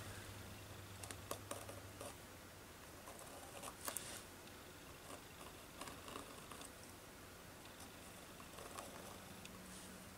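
Very faint, scattered scratches and light ticks of a Stabilo All pencil tracing around the edges of card wing cutouts on a paper journal page, over a faint low hum.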